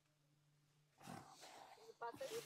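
Near silence with a faint steady low hum; about halfway through, a faint noisy rustle begins as a man crouches through the undergrowth.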